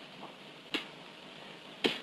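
A dip pen clicking against its inkwell: two short clicks about a second apart, the second sharper, over the steady hiss of an old film soundtrack.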